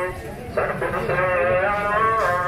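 A voice chanting a naat in long, wavering sung notes, pausing briefly at the start and picking up again about half a second in, over a low street-crowd rumble.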